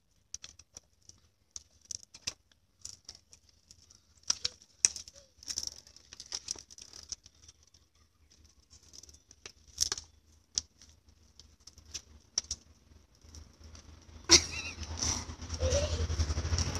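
Faint, irregular clicking and rattling of a small child's bicycle being ridden over concrete. Near the end a sudden loud noise sets off a louder steady rumble.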